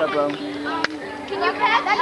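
Children chattering and calling out at play, several voices overlapping, with one sharp click a little before halfway through.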